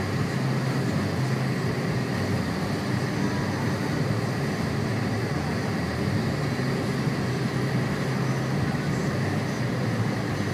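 Steady in-cabin car noise while driving on a snow-covered road: a low engine hum with tyre noise, unchanging throughout.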